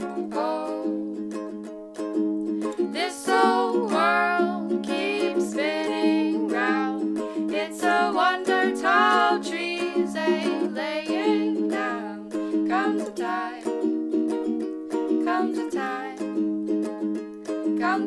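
A ukulele is strummed in chords while a woman sings the melody with vibrato, in an acoustic folk arrangement. The small room gives the sound a close, roomy tone.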